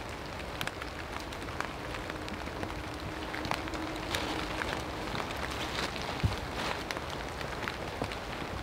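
Rain falling outdoors: a steady hiss with scattered, irregular drop ticks, and a faint low hum for a few seconds in the middle.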